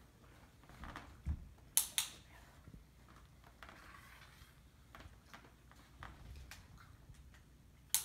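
A handheld dog-training clicker: a sharp double click about two seconds in, and another click right at the end as the puppy touches the treat, marking the wanted behaviour. A few faint taps in between.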